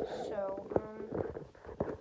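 Rubbing and bumping on a handheld phone's microphone as it is swung around, with a short wordless vocal sound from the girl about half a second in.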